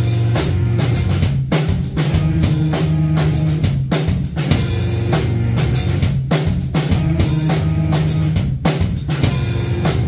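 Electric guitar and drum kit playing live rock music without vocals: sustained low guitar notes over a steady beat of kick and snare drum hits.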